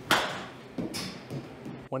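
A baseball bat hitting a ball off a batting tee: one sharp crack right at the start that rings out over about half a second, followed by a fainter noisy impact about a second later.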